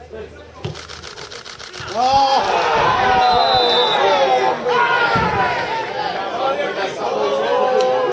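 Several people shouting and talking over one another, loud from about two seconds in.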